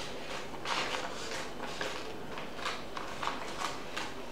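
Scissors snipping through paper: a series of short, irregular cuts.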